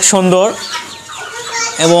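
Young Light Brahma chickens clucking in a pen on straw-like litter, under and between bits of a man's voice.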